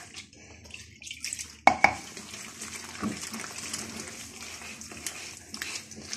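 A hand squelching and stirring wet gram-flour pakora batter in a bowl, with a sharp knock about two seconds in.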